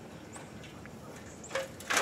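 Quiet outdoor background with a faint high chirp about a third of a second in, then a short burst of camera handling noise near the end as the handheld camera is reframed.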